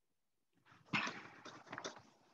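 A sharp knock about a second in, then rustling and handling noise close to the microphone, with a second knock near the end.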